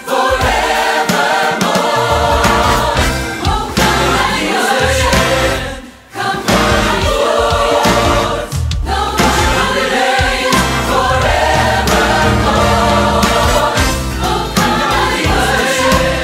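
Choir singing with orchestral accompaniment in a Christmas worship anthem; the sound briefly drops out about six seconds in, then comes back full.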